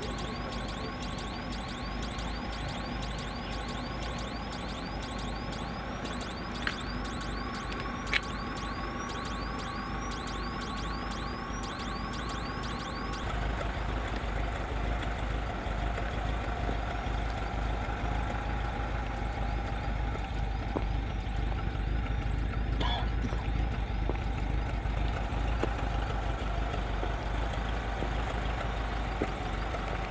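A van's engine running at idle, a steady low hum. A faint high chirp repeats about two to three times a second through the first part. About 13 s in the low rumble becomes louder and rougher.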